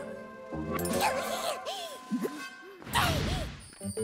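Cartoon background music with a character's short vocal yelps that swoop up and down in pitch, and a sharp whoosh about three seconds in.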